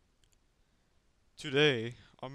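Near silence with a couple of faint clicks, then a narrating voice begins speaking about one and a half seconds in.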